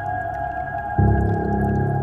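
Slow ambient meditation music of long held tones. A deep bass note enters about a second in.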